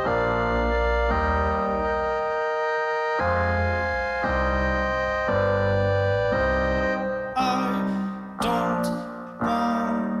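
Live loop station beatbox music: sustained organ-like chords over a deep bass, changing about once a second. Near the end, bursts of hissing high-pitched noise join in and the chords start to break up.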